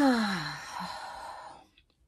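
A woman sighs. It starts with a sound of her voice falling in pitch and trails off into a breathy exhale that fades out shortly before the end.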